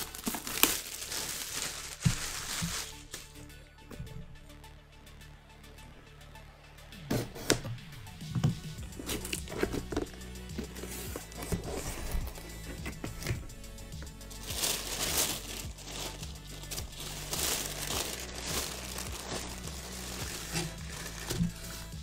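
Plastic packaging crinkling and rustling in repeated bursts as it is handled and pulled open, over steady background music.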